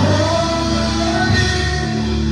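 Live gospel band music: sustained low chords over drums and electric guitar, with a male singer's voice in the first half.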